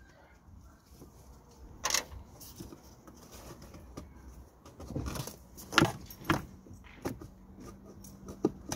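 Plastic clicks, knocks and rubbing as the mass airflow sensor housing is worked loose from the plastic intake duct by gloved hands, with a sharp click about two seconds in and two more around six seconds in.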